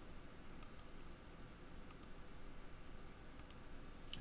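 A few faint computer mouse clicks, some in quick pairs, over a low steady room hum, as CAD menu commands are selected.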